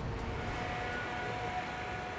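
Steady distant rumble of city traffic, with a faint steady hum over it.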